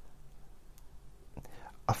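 A short pause in a man's quiet spoken monologue: faint background noise with a couple of small clicks, and his voice starting again near the end.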